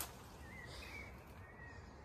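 Quiet outdoor background with faint bird calls, a short wavering chirp about half a second in and another about a second and a half in, after a brief soft knock right at the start.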